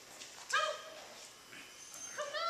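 A small dog gives one short, high-pitched bark about half a second in.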